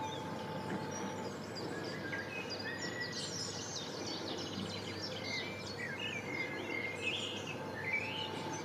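Several small birds chirping and singing in quick, overlapping phrases, denser from a couple of seconds in, over a steady outdoor background noise.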